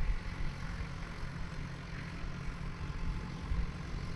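Tractor engine running steadily as a low hum, heard from some distance.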